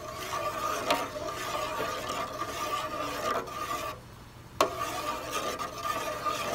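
A spoon stirring sugar water in a metal pot, scraping and rubbing against the bottom with a few sharp clinks on the pot. A steady hum runs underneath. The sound drops away briefly about four seconds in, then returns with a clink.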